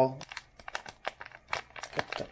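Foil wrapper of a hockey card pack crinkling as fingers tear it open at the top: a run of short, irregular crackles.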